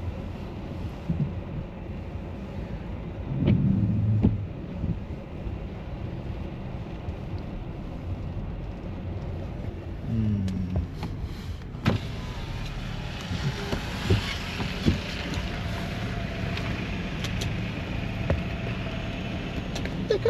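Low steady rumble of a car's engine and tyres heard inside the cabin as it creeps forward. About ten seconds in, a power window motor lowers the driver's window, and the hiss of the outside grows louder after it.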